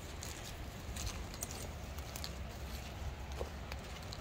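Footsteps through grass: faint scattered soft clicks over a steady low rumble.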